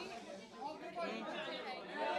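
Several people talking at once, their voices overlapping into indistinct chatter.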